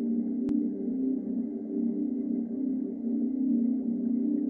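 Ambient music opening on a sustained low synthesizer drone, a held chord with a slight waver in level. A single sharp click about half a second in.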